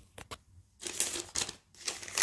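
Hands handling a cardboard collector's case and its miniature items: a few light clicks, then about a second of rustling.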